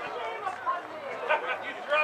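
Indistinct chatter of people talking, with voices overlapping.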